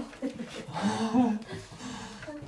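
A person's voice, heard briefly about a second in, with no clear words.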